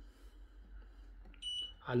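Washing machine control panel giving one short, high electronic beep about one and a half seconds in, the confirmation tone as the programme selector moves to the next wash programme.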